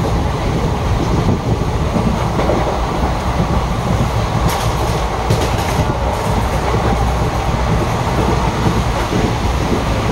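Passenger train running at speed, heard from inside the carriage through an open barred window: a steady loud rumble of wheels on rails, with a short cluster of sharp ticks about halfway through.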